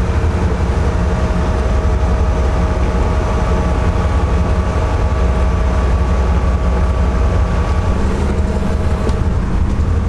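A steady low mechanical drone with a couple of faint steady tones above it; one of the tones stops about eight seconds in.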